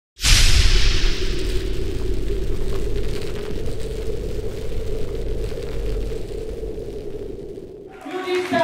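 Cinematic title-card sound effect: a sudden booming hit with a hiss that dies away, followed by a low rumbling drone that slowly fades out over several seconds.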